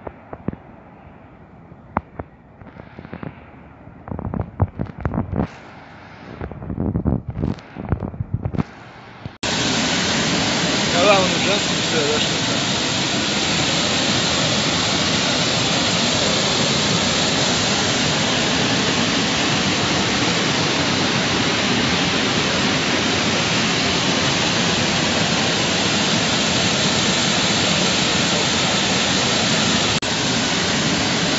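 Water pouring over a low river weir: a loud, steady rush that starts abruptly about nine seconds in and holds without change. Before it, quieter distant town traffic with gusts of wind on the microphone.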